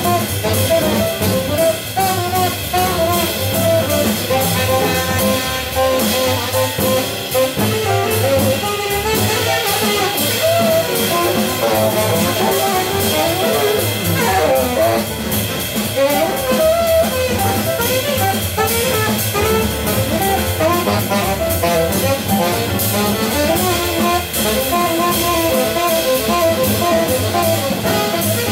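Small jazz group playing live: a tenor saxophone carries a moving melodic line over a drum kit's cymbals and drums and a double bass.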